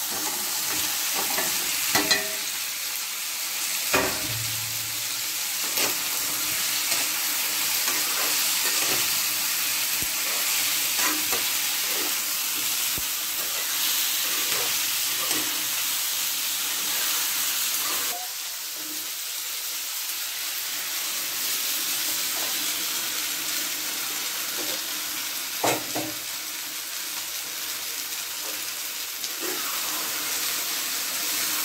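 Fried chicken pieces and peppers sizzling in oil and sauce in a nonstick wok over a gas flame, while a metal spatula knocks and scrapes against the pan as they are stirred. A few sharper clacks of the spatula stand out near the start and toward the end, and the sizzle eases a little past the middle.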